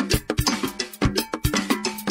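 West African popular music with no singing, carried by percussion: sharp strikes in a fast repeating pattern, about four a second, over a steady bass note.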